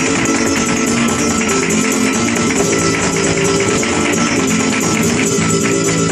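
Live flamenco: a flamenco guitar playing under dense, fast percussive strikes from the dancer's footwork and palmas hand-clapping.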